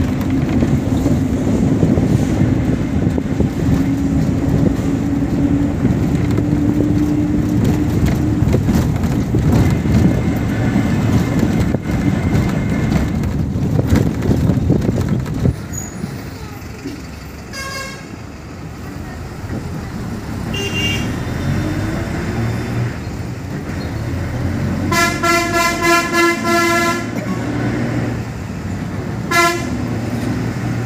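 Bus engine running with road and wind noise from inside the moving bus at an open window, the engine note rising slowly at first, then quieter about halfway through as the bus slows. A horn then sounds in short toots, with a rapid string of toots a few seconds from the end and one more short toot near the end.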